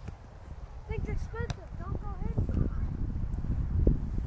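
Wind rumbling on the microphone, with distant shouts from people across an open field and a sharp click about a second and a half in.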